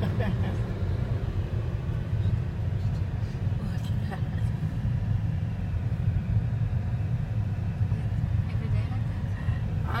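Steady low rumble of road noise inside the cabin of a moving car.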